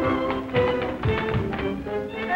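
Tap dancing: quick heel and toe taps on a wooden floor, in time with a lively dance-band accompaniment.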